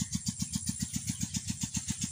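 Single-cylinder 'Peter' diesel engine running steadily, driving the irrigation pump that is watering the rice paddy: an even beat of about thirteen firing pulses a second.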